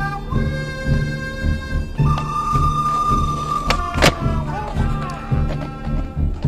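Background music with a steady low beat and sustained tones, with one sharp knock about four seconds in.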